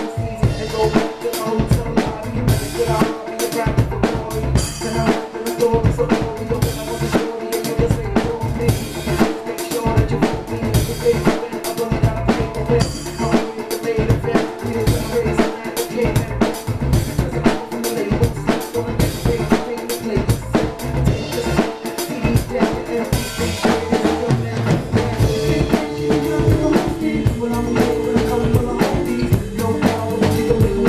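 Acoustic drum kit played in a hip-hop groove, with kick drum, snare and cymbals, over the song's recorded band track, which has no vocals in this stretch.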